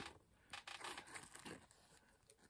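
Near silence, with a faint rustle and a few soft clicks in the middle as a small paper sticker disc is turned over in the hands.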